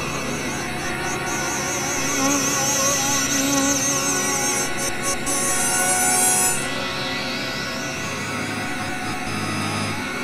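Microtonal electronic music played on a virtual Casio CZ phase-distortion synthesizer, tuned to 12 notes of 91-EDO: dense sustained tones with a warbling high line that cuts off about two-thirds of the way in, followed by a rising sweep in the upper range.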